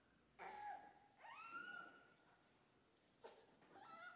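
Faint high-pitched vocal calls: a short one about half a second in, then a longer one that rises in pitch and holds, with a click and another short call near the end.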